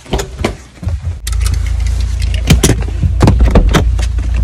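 Steady low rumble inside a car, starting suddenly about a second in, with several sharp clicks and knocks close to the microphone over it.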